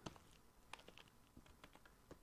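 Faint typing on a computer keyboard: a string of separate, unhurried keystrokes.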